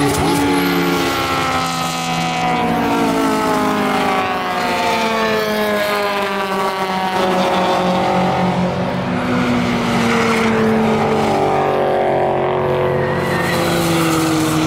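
Time-attack race cars passing at speed on a track, one after another, their engines overlapping. Each engine's pitch falls as the car goes by.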